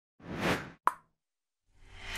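Animation sound effects: a short whoosh that swells and fades, then a sharp pop with a brief ring about a second in. A new sound starts building near the end.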